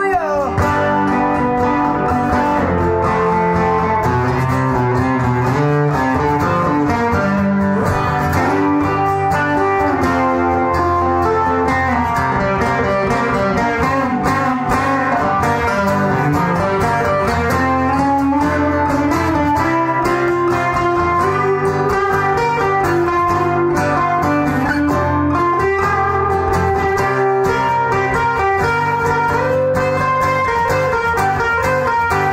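Live amplified guitars playing an instrumental break of a rock song: a picked lead guitar line over strummed rhythm guitar and sustained low notes, with no singing.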